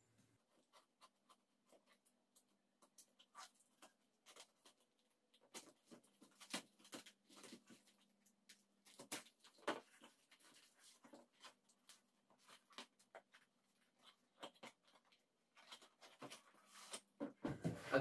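A utility knife slitting the tape on a cardboard shipping box, and the cardboard flaps being pulled and torn open: faint, scattered scrapes and ticks.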